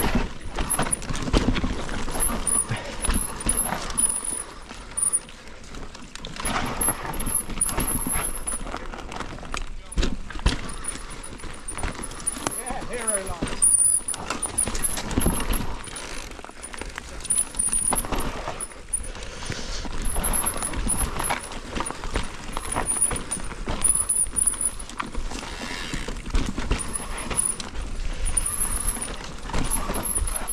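Mountain bike riding fast down a steep, rough dirt trail, heard from the bike or rider: steady tyre and wind rush with irregular rattles and knocks as it goes over roots and bumps.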